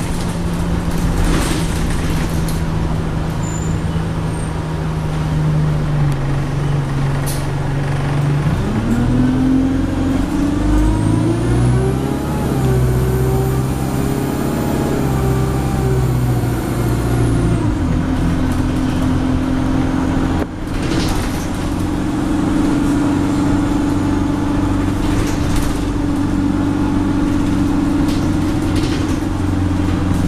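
Alexander Dennis Enviro200 bus heard from inside the passenger saloon while driving. The engine note climbs about nine seconds in as the bus pulls harder, with a high whine above it, then drops back a little before eighteen seconds and settles into steady running.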